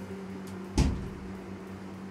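A single sharp knock a little under a second in, over a steady low hum.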